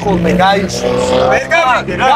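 Men's voices talking loudly and excitedly, one voice drawing out a long held sound in the middle, over a steady low car-engine hum.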